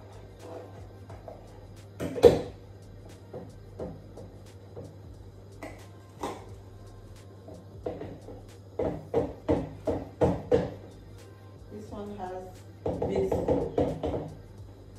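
Kitchen handling sounds: one sharp knock about two seconds in, then a quick run of about six clacks, about two a second, as scissors and a plastic sachet are worked over a plastic measuring jug.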